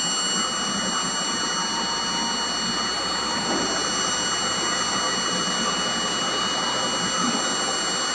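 Vibratory stress relief exciter motor running up in speed, driving the clamped workpiece toward its resonance peak: a steady mechanical noise with several fixed high-pitched whines.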